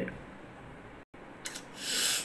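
Low room tone with a brief dropout about a second in, then a short, loud, breathy hiss near the end, lasting about half a second.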